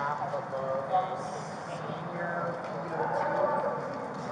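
Footsteps of several people walking on a hard marble floor, with voices talking in the background.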